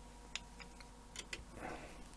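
A few light, sharp clicks and ticks from a small screwdriver and model parts being handled, with a brief rustle of handling near the end.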